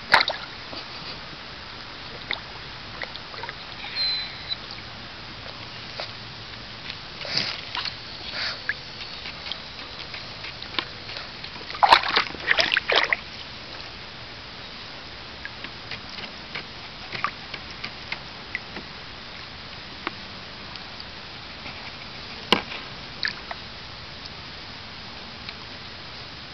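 Silky terrier splashing and sloshing water in a shallow plastic kiddie pool, nosing and pawing at a crawfish in the water. The splashes come in irregular bursts, busiest and loudest about halfway through.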